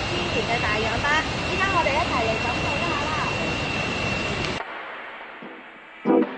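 Steady rushing roar of a tall waterfall, with a thin steady high-pitched tone over it; the roar cuts off suddenly about four and a half seconds in, leaving a much quieter background.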